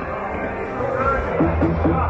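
Big Hot Flaming Pots slot machine playing its bonus-round music and sound effects during the free-spin feature, with three short rising blips in quick succession about a second and a half in.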